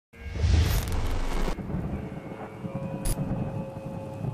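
Logo intro sound effect: a loud low boom with a hiss over it that cuts off about a second and a half in, leaving a quieter low rumble with a faint steady tone and a sharp click near the end.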